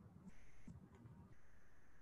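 Near silence: room tone, with faint high-pitched steady tones twice.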